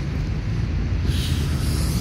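Low, steady rumble of city traffic around a large square, with a rise in hiss about a second in.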